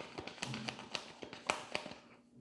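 A deck of tarot cards being shuffled and handled by hand: a quick, irregular series of sharp clicks and taps.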